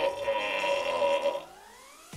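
A man's long, drawn-out vocal cry held at one steady pitch, cutting off about a second and a half in.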